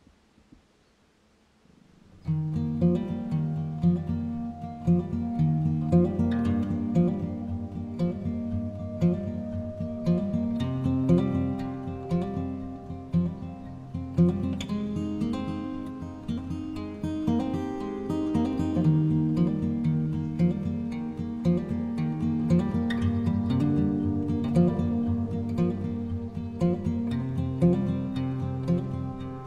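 Background music: acoustic guitar playing a steady picked and strummed pattern, starting about two seconds in after a moment of near silence.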